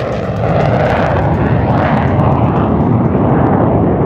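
F-22 Raptor's twin Pratt & Whitney F119 turbofan engines in a low flyby: loud, steady jet noise that swells about half a second in.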